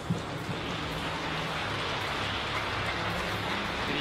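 Arena audience applauding: a steady, even patter of clapping that grows slightly louder.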